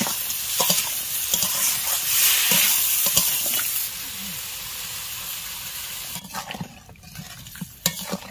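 Masala-coated sea crab pieces sizzling in a hot wok while a metal spatula stirs and scrapes them. About four seconds in, water is poured in and the sizzle suddenly drops to a quieter simmer as the dry fry turns into curry.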